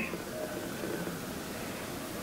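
Quiet room tone: a faint, steady background hiss with no distinct sound.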